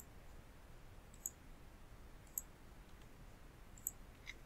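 Four short, sharp computer mouse clicks about a second apart, over faint low background noise.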